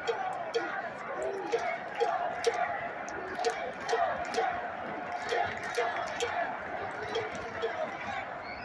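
Ballpark crowd noise: a steady murmur of many voices with scattered shouts and sharp claps dotted through it.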